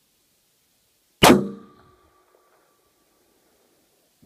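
.300 WSM rifle firing a single shot about a second in: one sharp, loud report that dies away quickly, followed by a faint ringing tone that lingers for about a second and a half.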